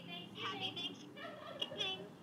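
Recorded turkey gobble sound effect, a seasonal greeting preset of a Toucan security camera, played back through a small device speaker. It comes in two quick, warbling gobbling bursts.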